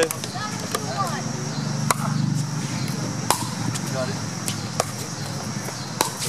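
Pickleball paddles striking a plastic pickleball in a rally: several sharp pops, the loudest about a second and a half apart. A low hum runs underneath and swells about two seconds in.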